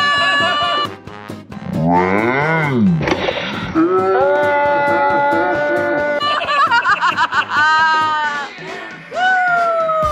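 Comic sound effects and music: a swooping pitch glide up and down, held horn-like notes, and a long falling note near the end.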